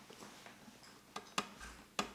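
Faint room tone after the guitar has stopped, with a few light clicks: two close together past the middle and a sharper one at the end.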